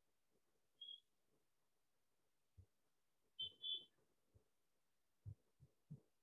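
Near silence: room tone, broken by a faint short high chirp about a second in, a louder double chirp about three and a half seconds in, and a few soft low knocks near the end.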